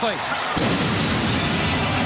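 Arena goal cannon firing after a home goal: a sudden blast about half a second in, followed by a steady loud din that holds on.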